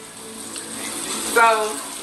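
Steady sizzle of frying in pans on the stovetop: catfish fillets in a cast-iron skillet, with butter in a wok beside it.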